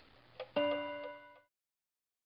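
Clock ticking faintly, then a single bell-like chime about half a second in that rings for nearly a second, fading before it stops.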